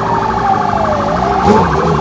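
A siren wailing: its single tone falls slowly, bottoms out about a second in, then rises again, over a steady, dense background of street noise.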